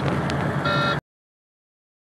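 A semi truck's dashboard warning alarm beeps once about half a second in, over the steady hum of the truck running. The alarm goes with a "Stop" warning for a failure on the dash display, and it keeps sounding even after restarts. All sound cuts off suddenly about a second in.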